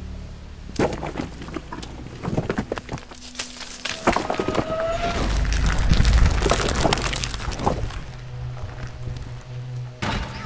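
Action film sound effects over music: a rapid run of crashes and impacts that builds into a deep rumbling boom about six seconds in, then settles into a steady low hum with held tones near the end.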